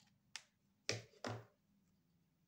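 Fingertips tapping on a sheet of paper. There are two light taps, then about a second in two firmer taps with a dull thud, a quarter-second apart.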